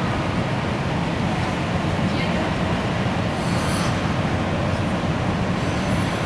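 Steady rink ambience: a low, even rumble of arena room noise with indistinct voices of people at the boards.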